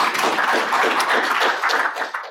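Audience applauding: many people clapping at once, at an even level.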